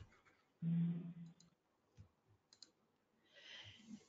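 Faint clicks and small noises on a conference-call audio line: a short low buzzing hum about half a second in, a few light clicks around the middle, and a soft hiss near the end.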